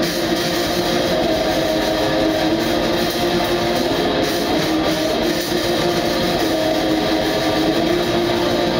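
Live black metal from a guitar-and-drums duo: distorted electric guitar over fast, dense drumming, a loud unbroken wall of sound.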